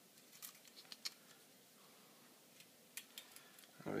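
A few faint, scattered small clicks as fingers handle the scooter motor's end cap and its spring-loaded brush plate.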